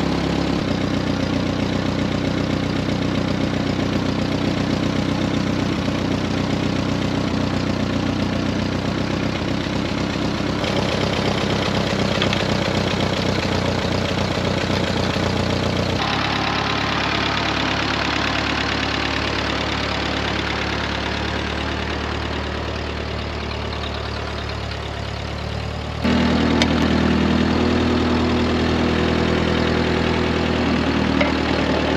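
Ford 8N tractor's four-cylinder flathead engine running steadily at a slow idle. The sound jumps abruptly in level and tone about 11, 16 and 26 seconds in.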